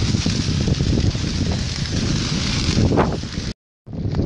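Wind buffeting the microphone in outdoor fire footage: a steady low rumble with a hiss over it. It cuts out abruptly for a moment near the end, at a cut between clips.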